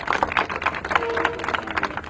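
Applause from a small crowd, the separate hand claps distinct and irregular.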